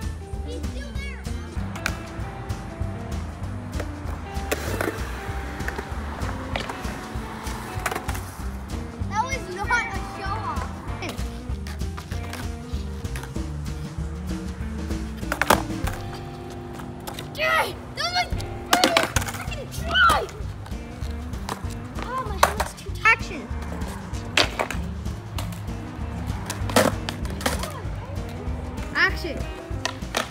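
Music with a steady beat, over skateboards rolling on concrete and several sharp clacks of boards hitting the ground during tricks.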